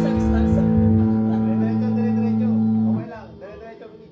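A rock band's electric guitars and bass holding one sustained chord that rings steadily, then cuts off abruptly about three seconds in. Voices talking follow.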